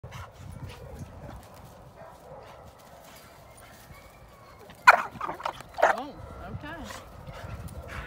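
Dogs at rough play: low scuffling, then two loud barks about a second apart, about five and six seconds in, followed by shorter vocal sounds that bend in pitch.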